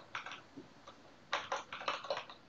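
Computer keyboard typing: a few separate keystrokes at the start, then a quicker run of clicks in the second half as code is typed.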